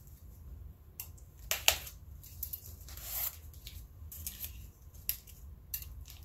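Box cutter slicing and tearing through packing tape and bubble wrap: a series of short, scratchy rips and crinkles, the sharpest a little past a second and a half in.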